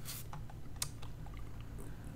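A few scattered sharp clicks from computer input, the clearest just after the start and about a second in, over a low steady hum.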